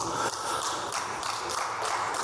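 Applause from many people, a dense, steady patter of clapping hands.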